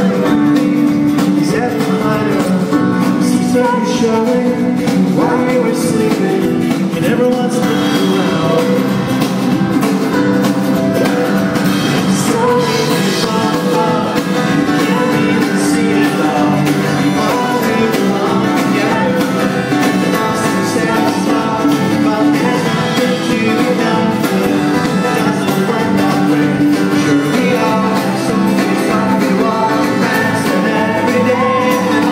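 Live pop-rock band playing a song through a concert hall PA: grand piano, drum kit and electric guitar, with a woman singing.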